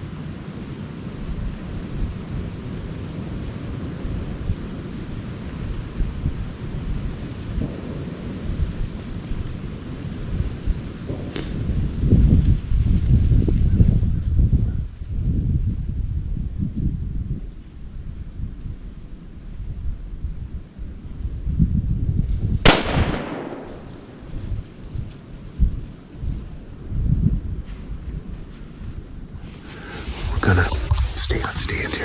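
A single shot from a hunting rifle chambered in 350 Legend, about three quarters of the way through: one sharp crack with a short ringing tail. Under it runs a steady low rumble on the microphone.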